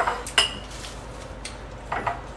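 A metal spoon clinking against a ceramic bowl during eating: a sharp clink at the start, another about half a second in with a brief ring, and a third near the end.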